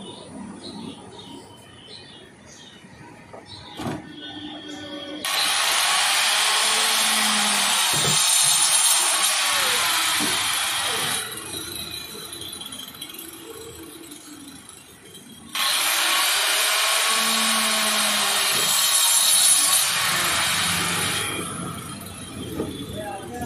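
Handheld electric cutter with a circular blade slicing through the wall of a plastic drum in two passes of about six seconds each, each starting abruptly. A single knock comes just before the first pass.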